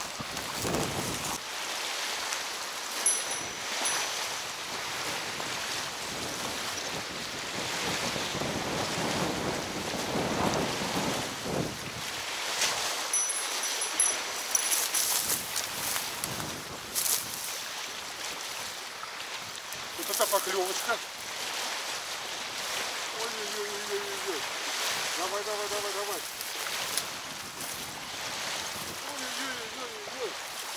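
Wind buffeting the microphone over choppy waves lapping at a riverbank. A small bite-alarm bell on a fishing rod tinkles briefly about three seconds in and again, with a flurry of clicks, around thirteen seconds in.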